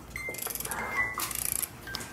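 Small music box playing a slow tune of single high, ringing notes, one after another.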